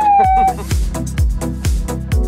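A drawn-out shout of "lit!" and a laugh, then background music with a steady thumping beat.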